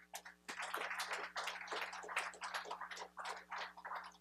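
Scattered applause from a small audience: a quick, irregular run of separate claps that starts about half a second in and stops just at the end.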